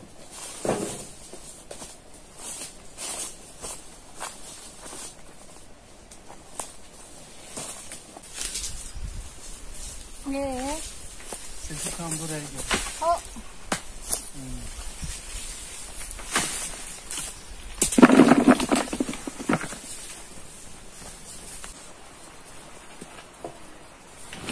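Walnuts being gathered by hand from grass and fallen leaves: scattered rustles and light knocks. Faint voices come in the middle, and a louder, closer burst of noise comes about three-quarters of the way through.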